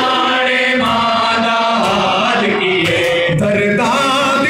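Men's voices chanting a noha, a Shia lament, together in unison, loud and steady.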